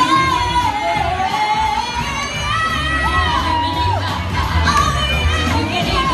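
Female vocal group singing into handheld microphones over amplified backing music with a steady low bass.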